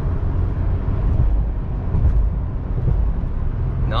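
Steady low rumble of road and engine noise inside the cabin of a 2019 Toyota 4Runner cruising at highway speed while towing a heavy enclosed trailer.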